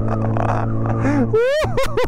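Motorcycle engine running at a steady speed while riding, a constant low hum. About a second and a half in, a short, steeply rising and falling wordless voice cuts in over it.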